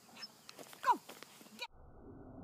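A small dog's brief whining cry about a second in, falling steeply in pitch, among a few light clicks. The sound cuts off suddenly near the end.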